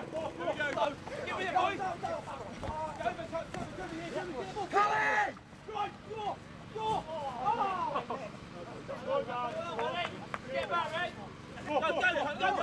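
Men's voices shouting and calling out over one another during rough play, with one loud yell about five seconds in.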